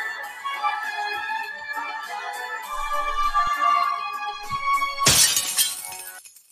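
Opera music with long held notes, ending in a high sustained note; about five seconds in, a cartoon sound effect of a wine glass shattering, the loudest sound, which then dies away.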